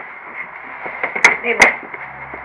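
A man's voice-over says a single word over a steady hiss with a thin high whine, and two sharp clicks come in quick succession near the end.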